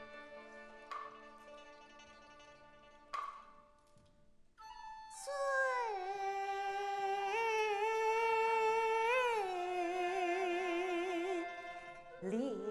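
Kunqu opera ensemble playing a soft, sustained introduction marked by two sharp percussion strikes, then a female voice entering about five seconds in, singing long held notes that slide between pitches and waver with vibrato over the accompaniment.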